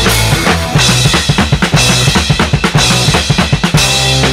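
Hardcore punk recording with the drum kit to the fore: bass drum, snare and cymbals hit hard over sustained low chords. About a second and a half in, it breaks into a choppy stop-start run of sharp hits.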